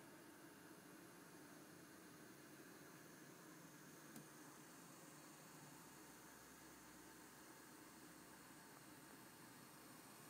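Near silence: faint steady hiss of room tone, with one faint tick about four seconds in.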